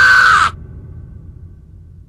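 A male anime character's long, held scream that cuts off about half a second in, leaving a low rumble that fades away.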